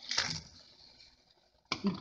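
A short splash as vegetables are dropped from a bowl into a pot of water, dying away within about a second.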